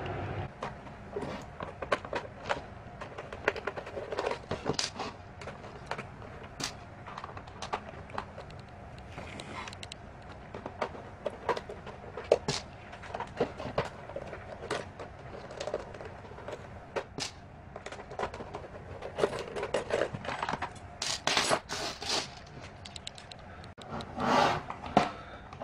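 Screwdriver turning screws out of a fan's plastic base, with scattered small clicks and scrapes of metal on plastic as the parts are handled. A cluster of louder clicks and rattles comes near the end as the plastic housing is opened.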